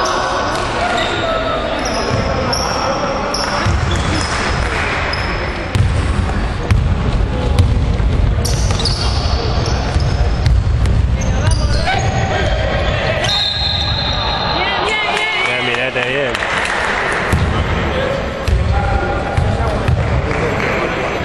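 A basketball being dribbled and bouncing on a wooden court in an echoing sports hall, with repeated sharp knocks, short high squeaks from sneakers on the floor, and players' and spectators' shouts throughout.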